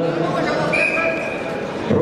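A referee's whistle blown once, one steady high note lasting under a second, as the wrestling bout is restarted. Under it, the murmur of a large indoor crowd.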